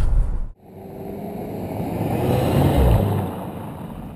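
A vehicle pass-by whoosh: engine and rushing noise swell to a peak about three seconds in, then fade away. It starts after a brief silence about half a second in.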